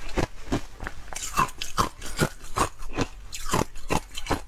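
A person chewing a mouthful of soft ice close to the microphone: a steady run of crunches, about three a second.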